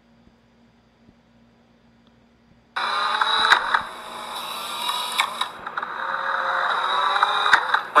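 Near silence for nearly three seconds, then sound cuts in suddenly: instant cameras clicking and whirring amid steady outdoor noise, with a couple of sharp clicks.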